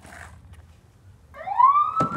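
Faint low background, then about a second and a half in a loud, high siren-like wail that rises steeply in pitch and levels off into a held tone.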